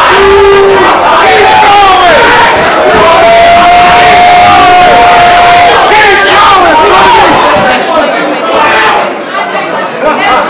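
Rap-battle crowd erupting in shouts and hollers after a bar, many voices at once, with one voice holding a long yell in the middle; the din eases off near the end.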